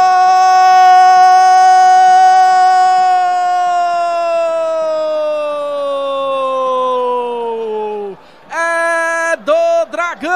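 Brazilian TV commentator's long drawn-out 'gol' cry for a scored penalty: one loud, held shout that slowly falls in pitch over its last few seconds as his breath runs out, then breaks into a few short shouts near the end.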